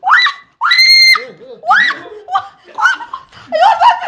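Women shrieking and crying out in high, rising voices, with one long held scream about a second in, amid laughter.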